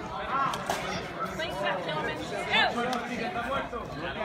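Onlookers and coaches ringside chattering and calling out over one another during a sparring bout, with one loud shout a little past halfway.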